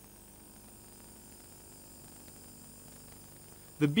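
Faint, steady hiss with a low hum and a few thin steady tones underneath, with no distinct event. A narrator's voice comes in just before the end.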